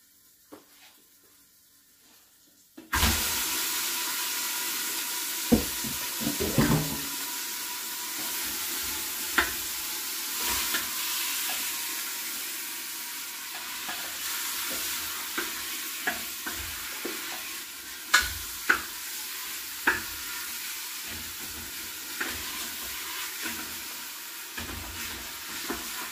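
Chunks of meat dropped into hot oil in an aluminium pressure cooker start sizzling suddenly about three seconds in, then keep sizzling steadily as they brown. A spoon scrapes and knocks against the pot now and then as the meat is stirred.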